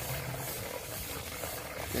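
Water poured in a steady stream from a metal pot into the neck of a plastic water jug, running without a break.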